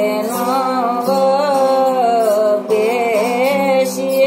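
A woman singing a devotional bhajan in long, wavering held notes over the steady drone of a plucked tambura. She breaks briefly for breath a little past halfway.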